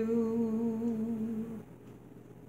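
A woman's voice, unaccompanied, holding one long low note of a sung refrain, fading and stopping about a second and a half in.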